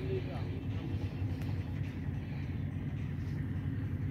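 Steady low motor drone with no change in pitch or loudness.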